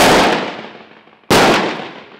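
Two gunshots about 1.3 seconds apart, each sharp and loud and followed by about a second of fading echo across the firing range.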